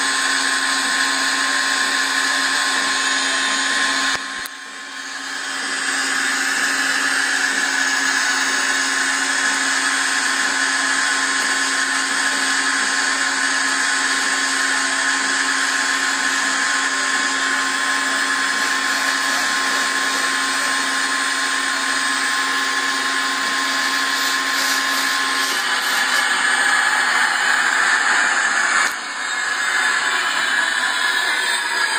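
A motor-driven fan whirring steadily with a constant hum. It drops away about four seconds in and builds back up over a second or two, and the hum tone falls away near the end, followed by another brief dip.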